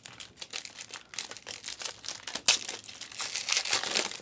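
Foil wrapper of a Bowman Chrome University trading-card pack crinkling as it is handled and worked open by hand, with a sharper crackle about two and a half seconds in.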